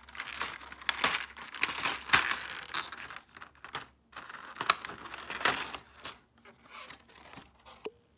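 Thin clear plastic blister tray crinkling and crackling with sharp clicks as small plastic toy accessories are pressed out of it by hand, in an irregular run of sounds that thins out after about six seconds.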